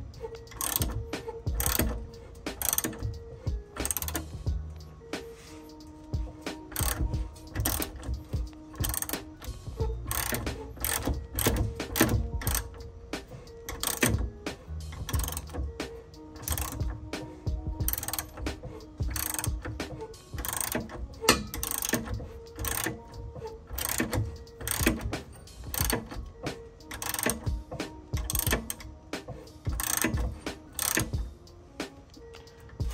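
Hand ratchet wrench clicking in repeated bursts as it is swung back and forth on a suspension bolt, with background music playing underneath.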